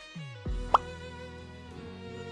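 Soft background music with sustained notes, and a short rising 'bloop' sound effect, like a cartoon pop, about three quarters of a second in.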